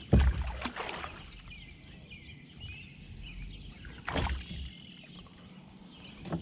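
Knocks and clatter against a kayak as a muskie is handled in a rubber landing net: one loud knock at the start, a few smaller clicks after it, and another knock about four seconds in. A bird chirps faintly in between.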